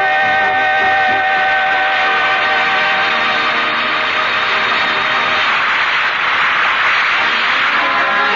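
A vocal quartet with band holds a long final chord, which gives way to a noisy wash that grows in the second half. This is the close of a sung number.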